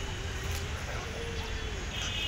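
Outdoor background noise: a steady low rumble, with a faint held tone lasting about a second and a half.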